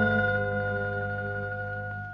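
A radio-drama music bridge ending on a sustained chord over a low drone that slowly fades out, marking a change of scene.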